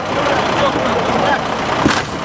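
Steady outdoor rumble and hiss of live field sound, with faint, indistinct voices in it and a sharp click near the end.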